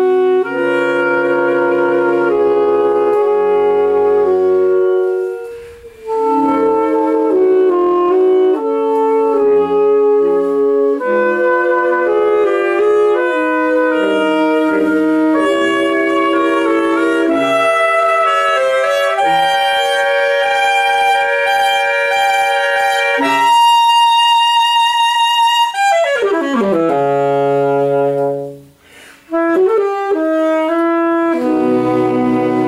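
Saxophone ensemble of five playing a piece in held chords, with a brief break about six seconds in and another near the end, just after a falling run in the lower parts.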